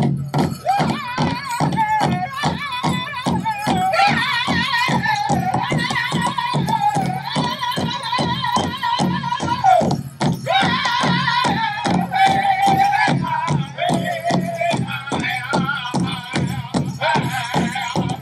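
Powwow drum group singing a grand entry song: high-pitched voices in unison over a big drum struck in a fast, steady beat, with a short break about ten seconds in before the song carries on.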